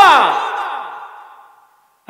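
A man's loud shouted cry into stage microphones, falling in pitch and trailing away over about a second and a half.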